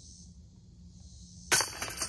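A putted disc striking the hanging chains of a disc golf basket about a second and a half in: a sudden metallic clash and jingle of chains that rings on, as the putt goes in.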